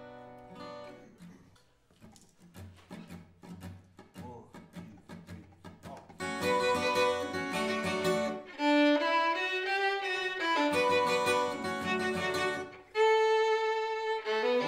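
Acoustic guitar picking a quiet instrumental introduction to a folk song. About six seconds in, a violin enters, bowing the melody in held notes over the guitar, and the music grows much louder.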